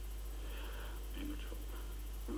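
Faint, low speech, much quieter than the talk around it, over a steady low hum.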